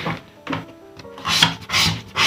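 Scratch-off lottery ticket being scraped, its silver coating rasped away in a series of quick strokes that get louder in the second half.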